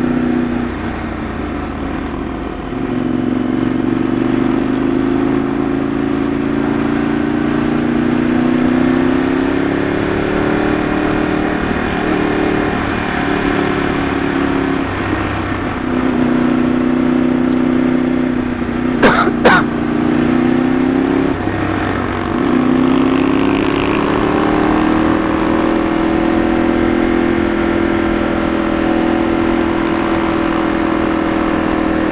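Ducati 848 EVO's L-twin engine running under load while riding, its pitch easing off and climbing back several times with throttle and gear changes. Two sharp clicks in quick succession about two-thirds of the way through are the loudest moment.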